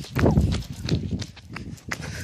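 Handling noise from a phone carried while walking: irregular rubbing and low thumps on the microphone, with a few sharp clicks and footsteps.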